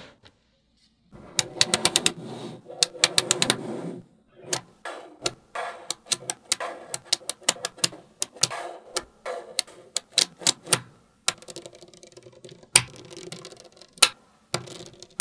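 Small magnetic metal balls clicking and snapping together as fingers join them into rows and layers. A fast run of clicks comes about a second and a half in, followed by scattered clusters of clicks with short pauses.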